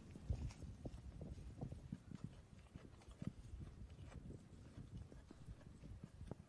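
A goat tearing off and chewing leafy weeds: a faint, irregular run of soft crunching clicks, several a second.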